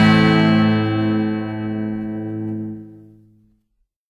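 Final chord of a punk rock song on distorted electric guitar, held and ringing out, fading away to silence about three and a half seconds in.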